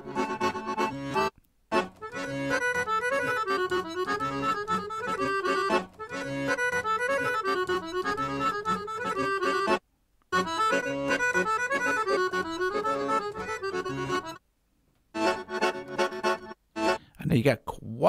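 Sampled accordion loops from BeatHawk's Balkans pack auditioned one after another, each playing a melodic phrase. Each loop cuts off abruptly into silence before the next starts, about a second in, around ten seconds in and twice near the end.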